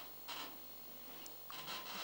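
A pause in the race commentary: low background hiss with a few faint, short breath-like noises near the microphone.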